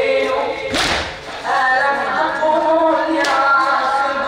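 Men's voices chanting a mourning lament together, the chant broken by two loud unison chest-beating strikes from the crowd, one about a second in and one near the end.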